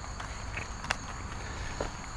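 Crickets or other insects trilling steadily in two high, even tones, over a low rumble. There are a few faint ticks and one sharp click a little under a second in.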